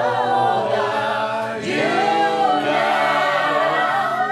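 A group of voices singing together without instruments, a celebratory song with held notes, briefly pausing for breath partway through.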